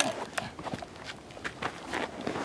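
Footsteps and shuffling on stony, sandy ground: uneven short crunches and clicks, a few each second, as people get up and move about.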